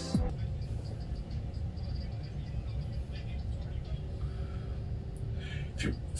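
A low, steady rumble, with a short laugh at the start and another near the end.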